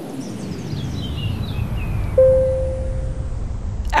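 Produced intro sound effect: a low rumbling swell that builds steadily, with a faint high shimmer sliding down in pitch in the first half. About two seconds in, a sudden hit leaves a single held tone that fades within about a second.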